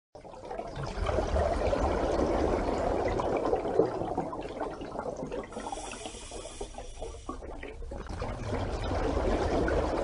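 Water rushing and bubbling in a continuous wash. It swells about a second in, thins through the middle and builds again near the end.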